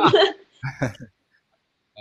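Brief laughter from people on a call: a few short bursts of laughing that stop about a second in.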